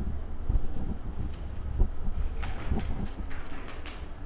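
Low steady rumble of room noise, with a few small knocks and some short hissing rustles in the second half.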